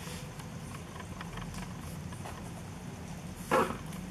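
Ballpoint pen writing on notebook paper, faint scratching over a low steady hum, with one short, louder sound about three and a half seconds in.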